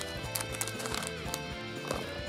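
Background music with steady held notes, over irregular crinkles and clicks from a foil supplement pouch being torn and pulled open by hand.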